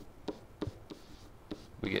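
A pen stylus writing on a digital writing surface: a few faint taps and scratches as a handwritten number and letter are drawn.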